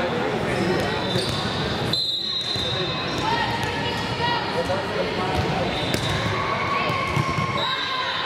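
Many overlapping voices chattering in a large, echoing gymnasium, with a couple of sharp knocks about two seconds and six seconds in.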